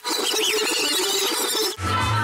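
High-pitched, wavering squeals over a steady wobbling tone. The sound cuts off sharply near the end, where music with a heavy bass beat starts.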